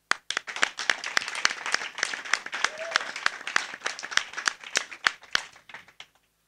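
A group of people clapping in applause, many separate claps close together, thinning out and stopping near the end.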